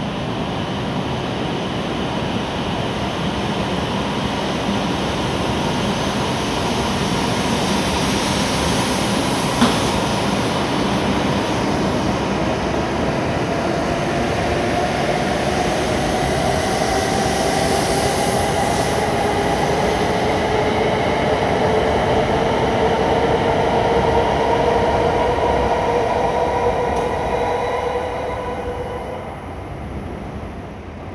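An E7 series Shinkansen train pulling out and accelerating, with a steady rolling rush and a rising whine from its motors that climbs in pitch from about twelve seconds in. A single sharp click comes near ten seconds in. The sound falls away as the last car clears the platform near the end.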